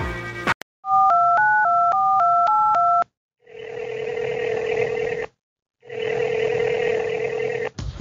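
A phone number dialed on a touch-tone keypad: a quick run of about nine short two-note beeps, each digit at a different pitch. Then two ring tones on the line, each about two seconds long. The tail of music cuts off just before the dialing.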